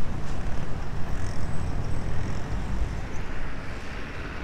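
Outdoor city background: a continuous low rumble of road traffic, with no distinct event standing out.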